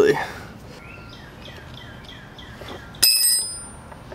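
A sharp metallic ping about three seconds in, ringing briefly at a high pitch, as the master link of the moped's steel roller drive chain is worked apart and its small pieces come free.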